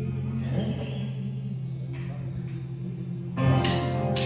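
A country band's closing chord ringing out and fading on guitars and pedal steel at the end of a song. About three and a half seconds in, a guitar strikes a new chord.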